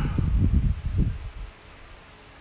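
Handling noise on a hand-held phone's microphone: irregular low rubbing and bumps that stop about one and a half seconds in, leaving faint room tone.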